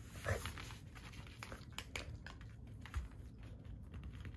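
Small Maltese dog making a short sound near the start, then scattered light clicks of its claws on the hard tile floor, with a soft thump about three seconds in.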